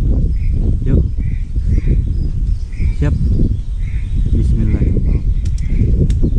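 Whistling ducks calling, short calls recurring every half second or so, over a loud low rumble.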